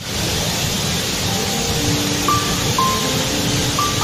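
Steady rushing of a large waterfall, starting suddenly, with slow, sparse music notes laid over it from about a second in.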